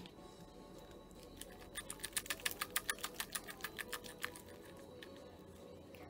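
A seasoning shaker shaken over a plate of food: a quick run of about twenty sharp ticks over two and a half seconds, roughly eight a second.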